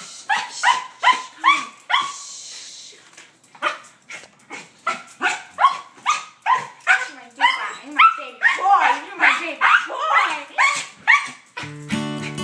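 A small dog barking and yipping in play, a rapid run of short sharp barks about two or three a second, with a brief pause a couple of seconds in; acoustic guitar music starts just before the end.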